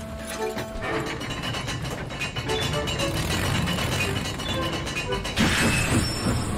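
Background cartoon music over the rumble and clatter of a steam locomotive rolling past, with a burst of steam hiss about five and a half seconds in.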